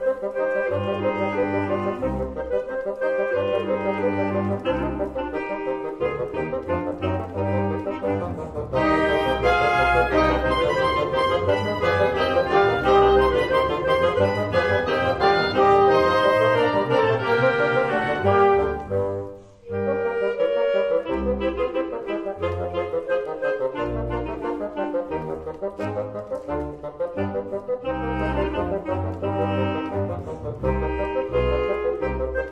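Classical wind ensemble of oboes, clarinets, bassoons and horns playing a serenade in sustained chords. It swells into a louder, fuller passage about a third of the way in, breaks off briefly about two-thirds through, then carries on more softly.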